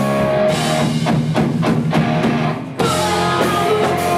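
Live rock band with drum kit and electric guitar: a held chord gives way to a run of quick drum hits, a fill. After a brief drop just before the three-second mark, the full band comes back in, with the singer's voice near the end.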